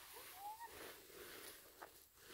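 Near silence, with faint rustling of a nylon tent being folded and stuffed into its bag.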